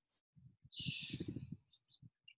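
A short rush of air noise with a low rumble under it, then a few quick high bird chirps near the end.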